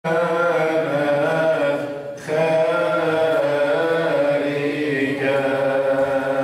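A man's voice chanting a hymn solo into a handheld microphone, in long held notes that waver slowly in pitch, with a short breath pause about two seconds in.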